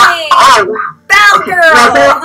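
Women's long, high-pitched wordless cries of emotion, two in a row, each sliding down in pitch.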